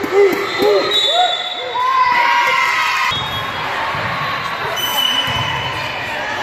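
Girls' voices cheering and calling out, echoing in a large gym. About three seconds in this gives way to quieter hall noise.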